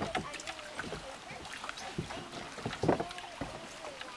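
Hollow knocks and bumps from a kayak hull as a person steps into it at a dock and sits down, with a cluster of louder knocks about three seconds in.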